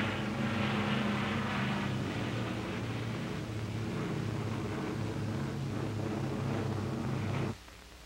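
Piston engines of propeller fighter planes running steadily in flight, a level drone that cuts off suddenly near the end.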